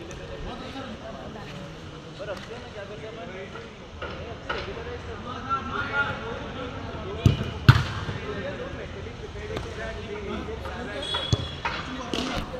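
A football being kicked during play: several sharp thuds, the loudest two close together about seven and a half seconds in, over the scattered calls and shouts of players.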